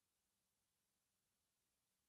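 Near silence: the audio is all but dead, with only a faint steady noise floor.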